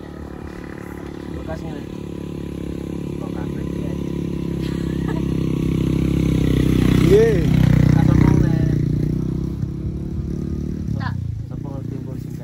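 A motorcycle engine running steadily as the bike approaches, growing louder to a peak a little past the middle and then fading as it passes.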